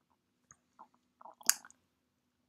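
A few soft clicks and smacks close to the microphone, with one sharper, louder click about one and a half seconds in, over a faint steady low hum.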